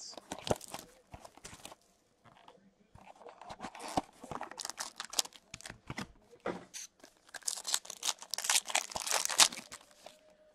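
A trading-card box being handled and its cardboard lid opened, with scattered clicks and rustles, then a shiny plastic card-pack wrapper being torn open and crinkled, the crackling densest and loudest in the last few seconds.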